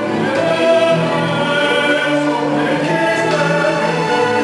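Sacred music for sung voices and a low string ensemble, holding long sustained chords that shift to new harmonies every second or so.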